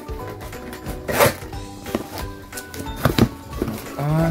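Background music over the sound of a cardboard parcel being cut and torn open: one longer rip about a second in, then two short sharp ones near the end.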